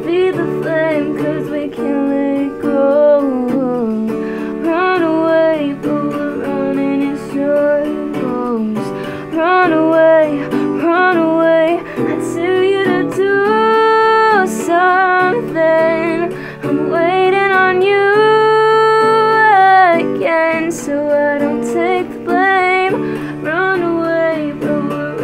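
A woman singing over her own acoustic guitar in a soft folk-style arrangement, her voice sliding between notes, with a couple of long held notes in the second half.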